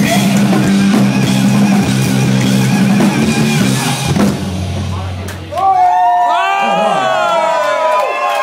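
Live metal band with distorted electric guitar, bass and drums holding a final chord that rings out and dies away about four to five seconds in. Then the club crowd cheers, whoops and yells.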